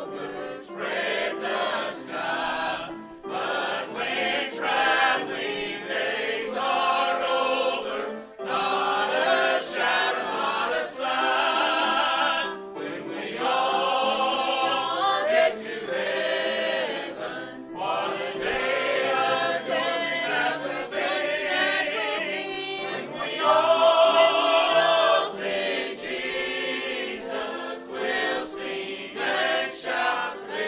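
A mixed church choir of men and women singing together, in sung phrases broken by short pauses for breath.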